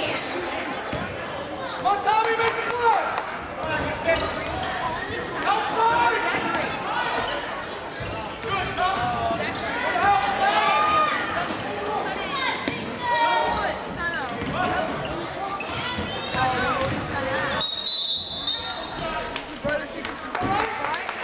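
Basketball game in a school gym: players and spectators calling out over a ball bouncing on the hardwood. Near the end a referee's whistle blows once, briefly, stopping play before a free throw.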